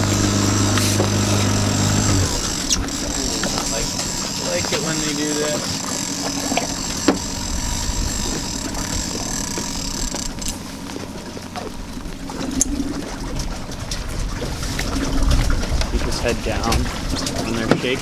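A steady low boat-engine hum for about two seconds that cuts off abruptly, then wind and water noise on an open boat deck with scattered voices and a few sharp clicks.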